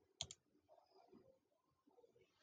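Two quick computer mouse clicks in close succession about a quarter second in, then near silence.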